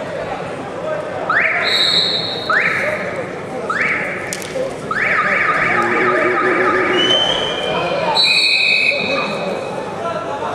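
Wrestling arena sound during a bout: four loud pitched blasts about a second apart, the last held for about two seconds, and a short high whistle near the end as the takedown lands.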